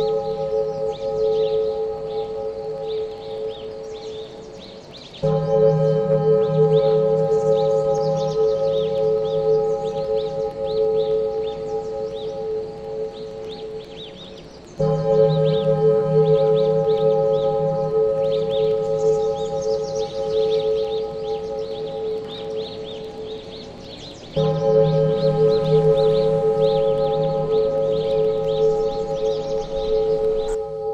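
Meditation music: a bell-like ringing tone over a low hum comes in fresh three times, about every ten seconds, and fades between, with a faint flickering chirping layer above it.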